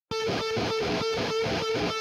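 Electric guitar music, a single note picked repeatedly about three times a second, starting suddenly right at the beginning.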